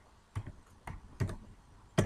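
Computer keyboard keys being typed: a handful of separate, unevenly spaced keystrokes.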